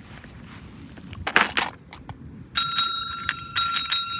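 A metal service bell (counter call bell) rung by pressing its plunger several times in quick succession, starting about two and a half seconds in, each ding leaving a clear ringing tone that carries on. A short rustling noise comes about a second before the first ding.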